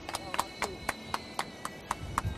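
A few people clapping: sharp, uneven hand claps, about four or five a second, that die away just after the end.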